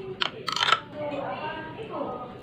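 A metal spoon clinks and scrapes against a small glass bowl while stirring pecel peanut sauce: a sharp click, then a short, louder scraping rattle within the first second.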